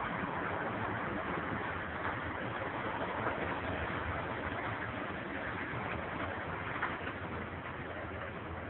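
Steady, even background noise with no distinct events, like outdoor ambience on a news clip's soundtrack.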